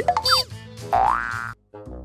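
Cartoon sound effects in a comic intro jingle: a few quick rising zips, then a springy boing sliding upward in pitch that cuts off suddenly. After a brief gap, a short jaunty music phrase starts near the end.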